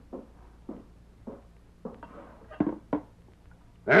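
Radio-drama sound effects of someone fetching a pot of hot water: about four evenly spaced footsteps, then a few quick knocks as the pot is handled.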